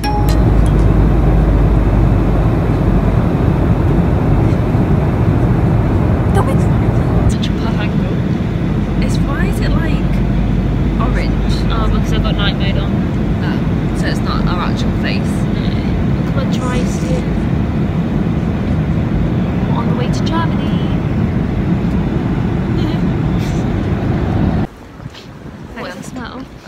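Loud, steady cabin rumble of an airliner in flight, with women's voices faintly talking over it. About a second before the end it cuts off abruptly to quieter outdoor background.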